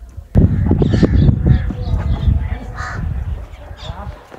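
A few harsh crow caws over a loud, gusty low rumble of wind on the microphone that comes in suddenly just after the start.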